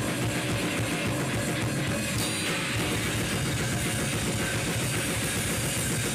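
Slam death metal band playing in a raw rehearsal-room recording: fast drum-kit hits under heavily distorted, down-tuned guitar and bass, at a steady level with no breaks.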